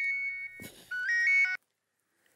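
Mobile phone ringtone: a short electronic melody of bright beeping notes. It breaks off briefly, plays again, and stops about one and a half seconds in as the call is answered.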